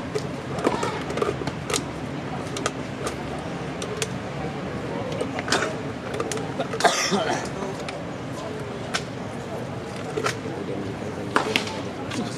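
Tennis ball struck by rackets and bouncing on a hard court during a doubles rally: sharp pocks at irregular intervals, over a steady background of voices. About seven seconds in there is a short, high squeal.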